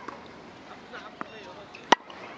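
Tennis ball struck on an outdoor court: one sharp knock just before the end, with a fainter tick a little earlier, over faint distant voices.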